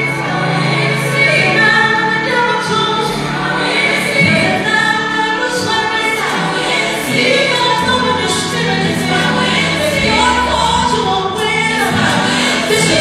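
Live gospel music: a female lead singer and backing vocalists singing over a band with drums and bass, heard loud through a church PA.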